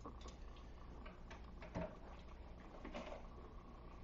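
Faint clicks and light scrapes of a utensil against a dish while butter is taken out to dab on a steak, one slightly louder click near the middle, over a low steady hum.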